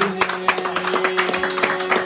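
Karadeniz kemençe, the three-string Black Sea fiddle, playing a quick tune over a steady held drone, with rhythmic hand clapping at about five claps a second.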